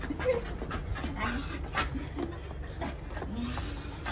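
Shiba Inu whining in excitement: several short whimpers that rise and fall in pitch.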